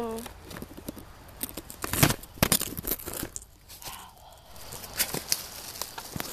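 Handling noise of a phone held in the hand: irregular crinkly rustling and clicks, with sharp knocks about two seconds in, half a second later and again near five seconds, as the phone is swung about.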